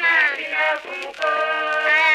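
Song intro of layered sung vocal harmonies, with no drums or bass.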